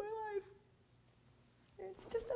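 A person's high, drawn-out sigh-like vocal sound lasting about half a second and falling slightly in pitch, then a short quiet, then laughter starting near the end.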